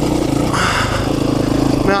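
KTM 530 EXC-R single-cylinder four-stroke dirt bike engine running steadily under way on a dirt trail, with a short hiss about half a second in.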